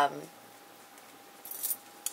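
A brief light metallic jingle about one and a half seconds in, from metal bangle bracelets clinking on a wrist as the hands move small paper items.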